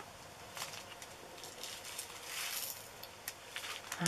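Faint crinkling of a small plastic bag of diamond painting drills being handled and opened, with a few light clicks.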